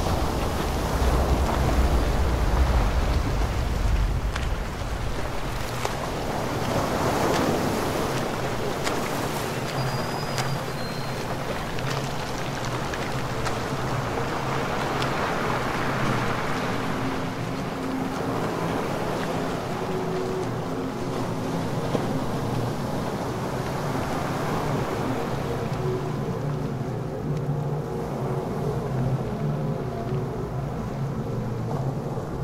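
Wind and small waves on a shoreline, with gusts rumbling on the microphone in the first few seconds and a faint steady low hum underneath in the second half.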